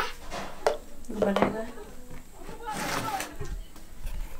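Brief, low fragments of voices with a few light clicks, and a short hiss near the end.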